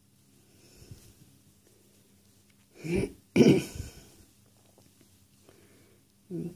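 A woman coughing twice in quick succession, about three seconds in.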